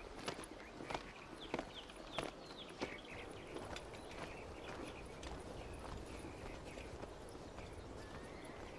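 Footsteps of soldiers walking at a steady pace on a paved street, about one step every 0.6 s, growing fainter after about three seconds. Faint short high chirps sound over a low ambient background.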